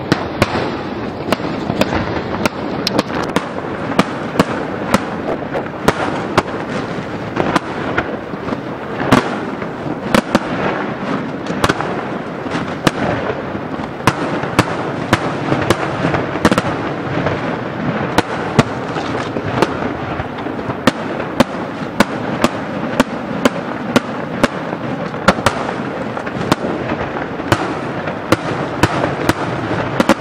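Aerial firework shells bursting in a rapid, unbroken barrage: many sharp bangs, often several a second, over a continuous dense rush of noise.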